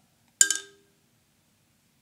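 A single sharp click from two marimba mallets as they are repositioned in one hand, about half a second in, with a brief ringing tone that dies away quickly.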